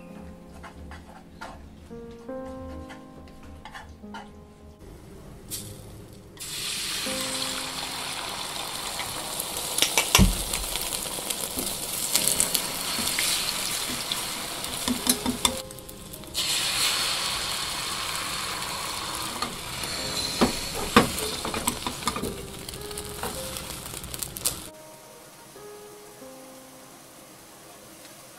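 Egg batter sizzling in a hot rectangular tamagoyaki pan, with scattered sharp taps of utensils against the pan. The sizzle starts about six seconds in, breaks off briefly about halfway, and stops a few seconds before the end, over soft background music.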